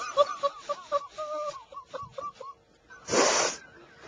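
A man laughing helplessly, unable to stop: a high-pitched, wheezing laugh in a run of short squeaky pulses. About three seconds in he draws a loud, breathy gasp.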